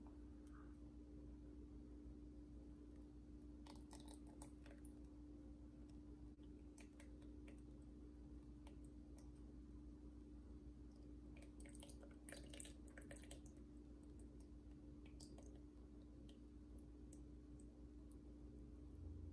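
Near silence with faint clicks and light scrapes of a mesh strainer against the crock pot as gunk is skimmed off the melted beeswax, bunched about four seconds in and again around twelve seconds in, over a low steady hum.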